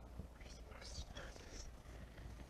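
Faint whispering as quiz team members confer quietly over an answer.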